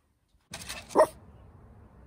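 A small poodle-type dog in a play bow gives a single short bark about a second in, a bark inviting play.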